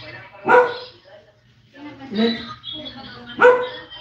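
A dog barking: two short, loud barks about three seconds apart, with quieter voices between them.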